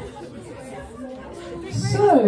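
Indistinct chatter of a group of people talking at once in a large hall, with no music, and one louder voice near the end.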